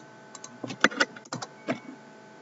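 About four or five short, sharp computer mouse clicks and key presses over roughly a second, the last about three-quarters of the way through. A faint steady electrical whine sits underneath.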